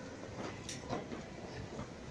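Pedestrian street ambience: a steady wash of noise with a few short, scattered clicks and knocks from passers-by.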